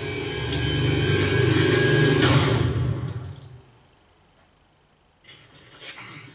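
Low rumbling drone from the TV episode's soundtrack, swelling for about two and a half seconds, then fading away to near silence.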